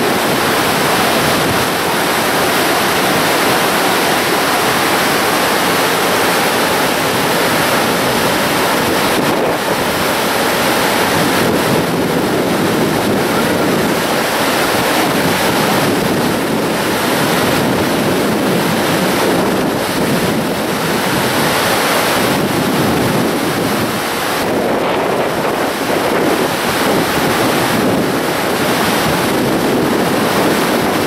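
Whitewater rapids of the Niagara River rushing over rocks: a loud, steady roar of churning water with small rises and falls.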